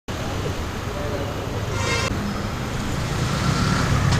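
Street ambience: road traffic running steadily, with people's voices in the background and a short higher-pitched sound just before two seconds in.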